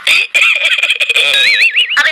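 High-pitched, sped-up cartoon voice wailing in a crying sound, its pitch warbling up and down in the second half.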